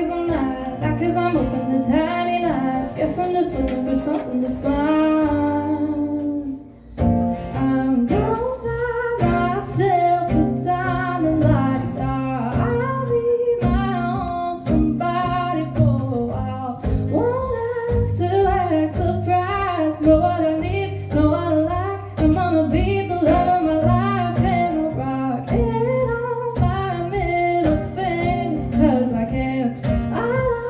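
A woman sings a song live, accompanying herself on a strummed acoustic guitar. There is a brief break in the playing and singing about six seconds in, then both carry on.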